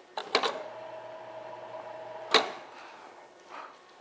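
Vertical sliding chalkboard panels being moved: a couple of knocks, then a steady two-tone squeal over a low hum for about two seconds, ending in a sharp thud as the board comes to a stop.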